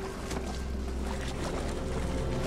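Water sloshing and splashing in a wooden tub as a person is immersed in it, over a low, steady music drone.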